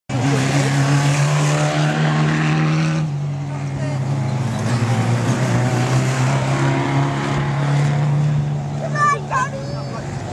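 ModStox stock car engines running at a steady note as the cars drive round a shale oval; the note shifts about three seconds in. A person's voice is briefly heard near the end.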